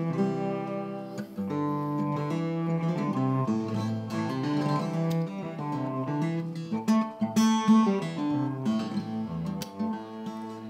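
Instrumental break in a folk song: a steel-string acoustic guitar strummed, with sustained notes bowed on an electric upright bass, and no singing.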